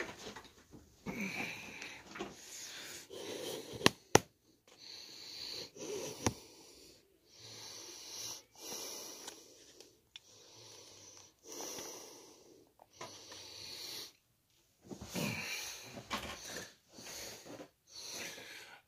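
Wheezy breathing close to the microphone, in a run of drawn-out breaths with short pauses between them. Two sharp clicks come about four seconds in.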